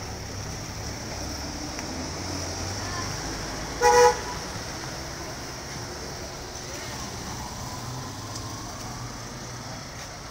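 A vehicle horn gives one short toot at a single steady pitch about four seconds in, over steady background noise.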